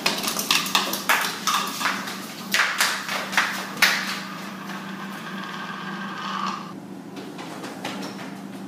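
A quick run of sharp knocks and clatters, like objects handled on a hard counter, over the first four seconds. A steady mid-pitched tone follows for about two seconds and cuts off suddenly, with a low steady hum underneath throughout.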